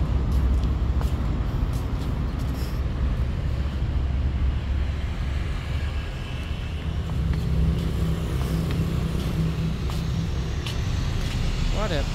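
Steady low engine rumble with a few light clicks.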